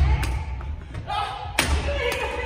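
Badminton rackets striking shuttlecocks in a feeding drill: two sharp smacks, one just after the start and one about a second and a half later, over low thuds of feet on a wooden gym floor.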